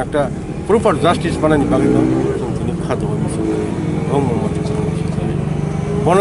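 A man's voice speaking in bursts over a steady low hum.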